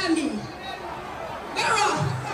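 Voices at a live show with the backing music dropped out: a voice over the stage PA calls out with a falling pitch at the start and again near the end, over crowd chatter in between.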